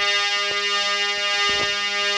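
Harmonium holding one steady chord, its reedy tones sustained, with a couple of soft knocks.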